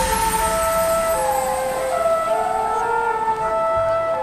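Electronic music playing over a stadium PA: held synth notes, with one note sliding down and then back up about two seconds in.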